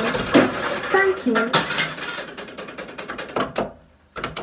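Coins dropping through a kiddie ride's coin mechanism, a rapid run of metallic clinks and clicks that tails off near the end.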